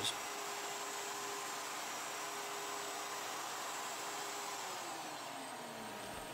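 Plunge router running steadily with a hissing, vacuum-like sound; near the end its pitch falls as it winds down after being switched off.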